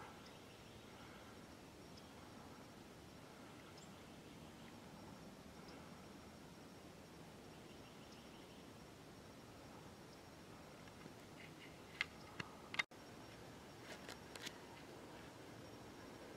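Near silence with faint outdoor ambience, broken by a few short clicks about twelve to fourteen and a half seconds in.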